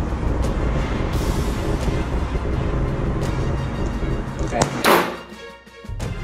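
Background music, with one loud, short blast about five seconds in: a JPX Jet pepper-gel launcher firing.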